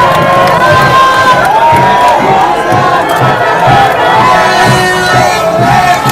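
A dense crowd shouting at close range: many raised voices overlapping, with long drawn-out calls, loud throughout.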